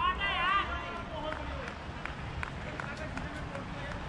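A short, loud shout with a wavering pitch, followed by fainter voices of players calling across an open cricket ground.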